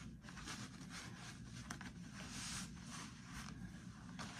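Faint scratchy rustling of a bootlace being pulled loose through the metal eyelets of a lace-up boot, with a few small clicks.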